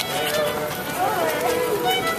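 Solo fiddle playing a dance tune, with a person's voice over it about a second in.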